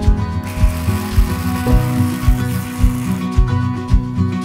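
Hand-held immersion blender running as it purées blanched spinach with ginger and garlic in a glass bowl, starting about half a second in and stopping just after three seconds. Acoustic guitar music plays underneath throughout.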